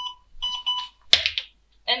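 MEDUMAT Transport emergency ventilator giving its power-on beeps just after being switched on: a few short electronic beeps, each on two pitches at once. A sharp click follows a little past a second in.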